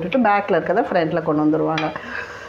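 A metal utensil clinks and scrapes against a kuzhi paniyaram pan while a woman talks without a break.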